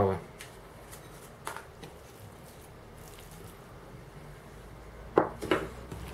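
Mostly quiet room with a few faint clicks. About five seconds in come two short, sharp knocks as hands start working seasoned minced meat in an enamel bowl.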